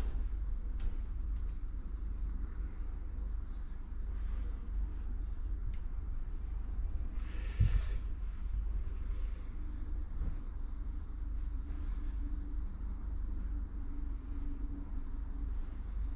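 Low, steady rumble of workshop room noise, with one short knock and a brief hiss about halfway through.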